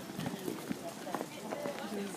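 Footsteps clicking on stone paving among a walking crowd, with indistinct chatter of passers-by.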